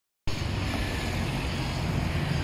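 Steady roadside traffic noise with a low rumble, starting abruptly a moment in.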